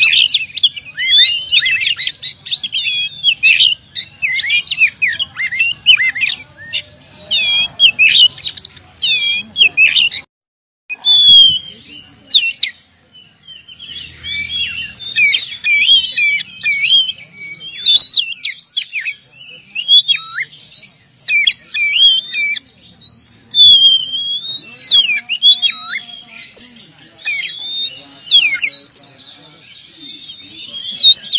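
Oriental magpie-robin (kacer) singing without pause: a rapid run of varied whistles, glides and chirps. There is a brief break about ten seconds in.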